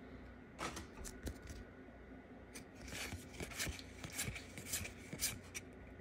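Pokémon trading cards being flipped through in the hand, one card slid behind another: a run of quick card clicks and swishes, sparse at first and busier from about halfway.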